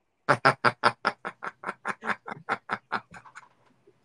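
A man laughing: a long run of quick, even 'ha' bursts, about six a second, that trails off near the end.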